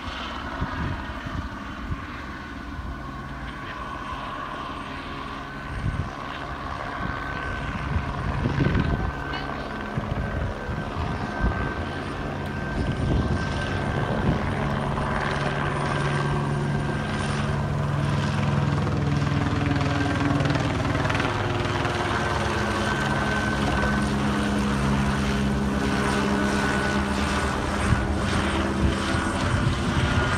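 Helicopter circling overhead, its rotor and engine making a steady low drone that grows louder over the first half and then holds.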